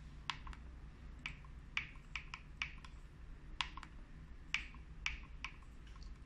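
Front-panel push-button keys of an SMM1312 digital indicator clicking as they are pressed, about a dozen sharp clicks at an uneven pace. This is the password 001234 being keyed in digit by digit to unlock the indicator's settings.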